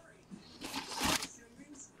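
Brief soft rustling as a nylon drawstring bag is handled, about half a second to a second in.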